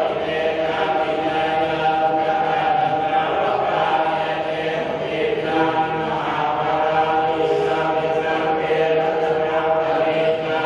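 Buddhist chanting by a group of voices reciting in unison, steady and unbroken.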